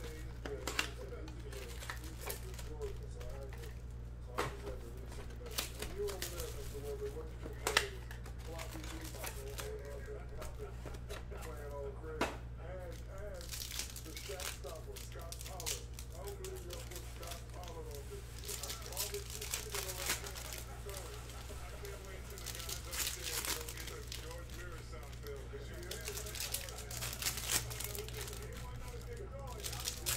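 Trading-card pack wrappers crinkling and tearing as packs of 2020 Bowman Chrome baseball cards are ripped open by hand, in scattered short crackles. A steady low hum runs underneath.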